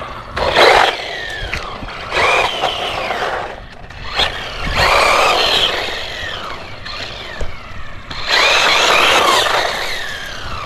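A FUUY Sweep Pro 1/16-scale brushless RC truck is driven in four throttle bursts on asphalt. In each burst the motor's whine sweeps up and down over the tyre noise.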